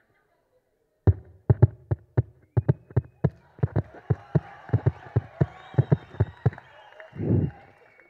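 A man making beatbox-style mouth percussion into a handheld microphone: a quick, uneven run of sharp thumps, about three a second. Audience noise builds underneath from about halfway through.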